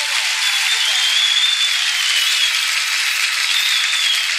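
Studio audience applauding steadily, with a thin, high wavering tone over it for a couple of seconds.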